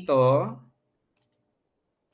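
Two quick computer mouse clicks, close together about a second in, from a right-click that opens a menu. A spoken word comes just before them.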